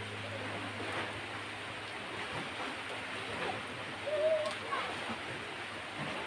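Steady hiss of rain falling on foliage, with a short wavering call about four seconds in.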